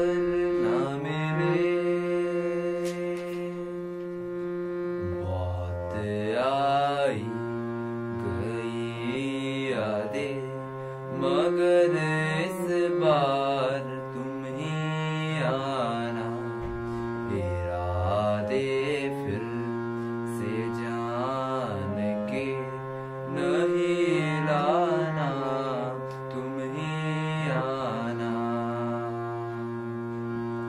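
A harmonium plays sustained reed chords and drone notes while a young man's voice sings a slow Hindi film melody over it. The phrases are long and held, with ornamented glides up and down in pitch.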